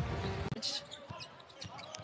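Basketball dribbled on a hardwood arena court, a few separate bounces, after loud arena crowd noise that drops away sharply about half a second in.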